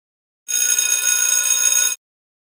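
Electronic workout-timer chime: a bright, ringing electronic tone about a second and a half long that starts half a second in and cuts off abruptly.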